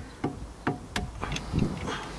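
Brake caliper piston wind-back tool clicking about six times at uneven intervals as it is turned to screw the rear caliper piston of an Audi A3 back in. The piston is winding in tight, which the owner puts down to a stiff self-adjuster in the caliper.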